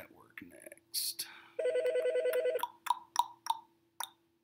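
An electronic alert sound: a fast trilling ring about a second long, followed by four short pings in quick succession.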